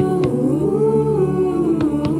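A cappella choir voices humming wordlessly in several parts, holding a chord that shifts slowly in pitch. Two faint clicks sound through it, a little after the start and near the end.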